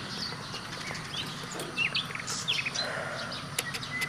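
Birds chirping here and there, short scattered calls over a steady outdoor background.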